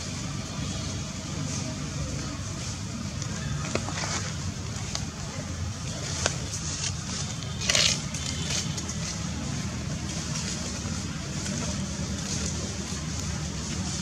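Steady low outdoor rumble with a few light clicks, and a short crunching rustle about eight seconds in, like dry leaves being disturbed.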